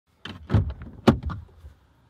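A quick run of sharp clunks and knocks inside a car cabin, the two loudest about half a second and a second in, dying away well before the end.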